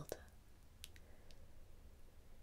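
Near silence: room tone with a faint low hum and a few faint, small clicks about a second in.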